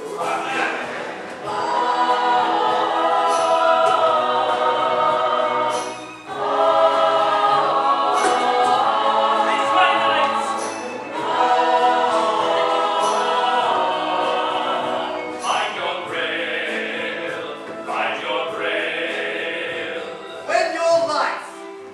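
Musical-theatre ensemble chorus singing with pit orchestra accompaniment, in long held phrases that break off briefly about every five seconds.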